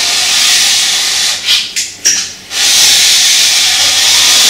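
A Toko Edge Tuner Pro's medium file scraping along a ski's steel side edge as the sharpener is pushed down its length: a loud rasping hiss. It comes as one long stroke, a short break with a few brief scrapes, then a second long stroke.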